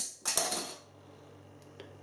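A metal crown cap clicks off a glass beer bottle under a bottle opener, followed by a short soft hiss of escaping gas. The opening sounds weak, a sign the beer seems a little flat.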